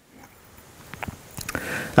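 A pause in talking: a few faint clicks about a second in, then a man drawing breath just before he speaks.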